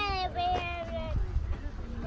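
A child's high-pitched voice: a short falling cry at the start, then one drawn-out high note lasting under a second.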